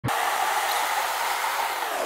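Steady, loud rushing hiss of road and wind noise from a car being driven, heard from inside the cabin.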